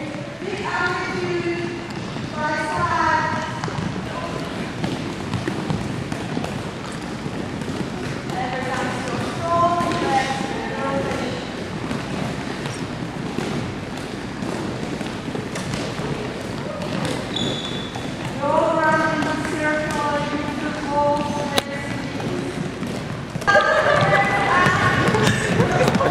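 Several handballs bouncing again and again on a wooden gym floor as players dribble and move through a ball-handling drill, with their footsteps on the court.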